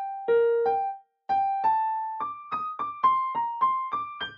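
Digital piano playing a single-line melody in ragtime style, one note at a time. After a couple of notes there is a brief break about a second in, then a run of evenly spaced notes that climbs in pitch.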